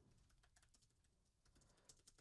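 Near silence with very faint computer keyboard typing: a scatter of soft key clicks as a command is typed.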